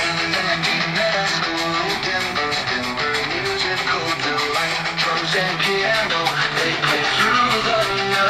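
Instrumental intro of an AI-generated hard rock song made with Suno: electric guitar over a steady drumbeat, played from a tablet held up to a microphone.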